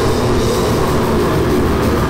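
Goregrind band playing live: heavily distorted guitars and bass over drums in a dense, continuous wall of sound.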